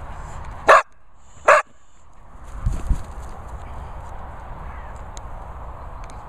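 A springer spaniel barking twice, two short sharp barks under a second apart, asking for play.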